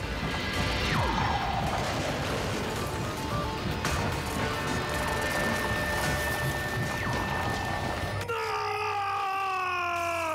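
Cartoon action soundtrack: music under crashing and rumbling effects, with falling whistle sounds about one second and about seven seconds in. Near the end, a long pitched tone slowly falls in pitch as dust clouds fill the scene.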